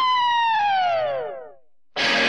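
A single falling glissando in a 1960s Hindi film song's soundtrack: one bright pitched tone, after a short upward blip, slides steadily down from high to low over about a second and a half and fades away, a siren-like swoop. The full band music cuts back in right at the end.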